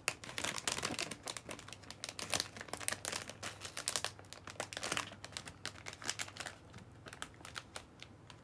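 Plastic bag of Anpanman chocolates crinkling as it is handled, in dense rapid crackles for the first five seconds or so, then sparser.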